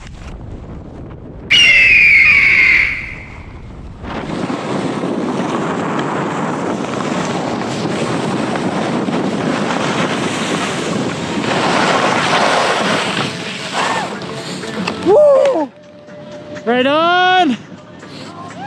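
Steady rushing noise of wind over an action camera's microphone and skis running over snow during a fast descent. A loud high-pitched cry about a second and a half in, and several rising-and-falling whooping shouts near the end.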